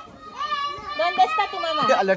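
Young children's high-pitched voices in drawn-out, wavering calls, several overlapping near the end.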